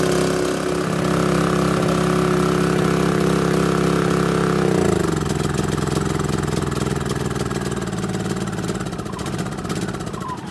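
Small 2.2 kW inverter generator's single-cylinder engine running on biogas fed through a hose instead of petrol. About halfway through its speed steps down and it runs on at a lower pitch, then near the end it begins to slow further as it winds down.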